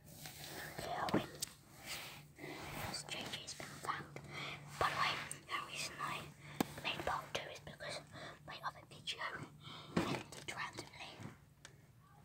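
A person whispering steadily, with a few sharp clicks in between.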